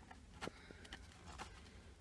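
Near silence, with a few faint taps as a cardboard tea box is handled and taken off a cupboard shelf.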